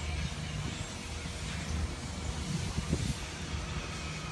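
A vehicle engine running with a steady low hum, and a few soft bumps near three seconds in.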